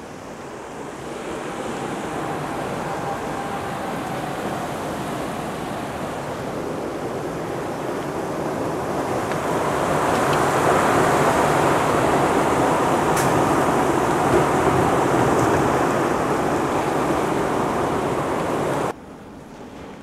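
Severe storm wind with driving rain: a dense roar of noise that builds over the first seconds and is loudest about halfway through, then cuts off abruptly shortly before the end.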